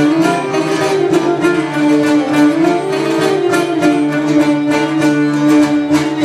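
Traditional Cretan instrumental music: a Cretan lyra bowing a sustained, ornamented melody over two Cretan laoutos plucking a steady rhythmic accompaniment, in a traditional kontylies tune.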